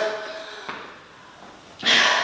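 Quiet room tone, then near the end a sudden loud, breathy exhale from someone out of breath after a hard bout of exercise.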